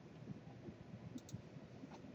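Near silence: faint room tone with two faint clicks a little over a second in.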